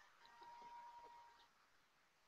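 Near silence: faint room tone, with a faint thin steady tone lasting about a second early on.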